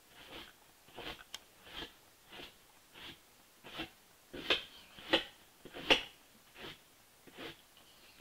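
A small brush swished repeatedly through a patch of craft fur to brush the fibres back: about a dozen short strokes, roughly one every two-thirds of a second, loudest in the middle.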